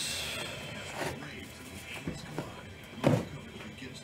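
Faint, indistinct voices and room noise, with one short louder sound about three seconds in.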